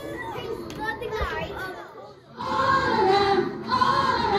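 Children's voices and chatter in a classroom, then, about two and a half seconds in, a children's choir starts singing with held notes.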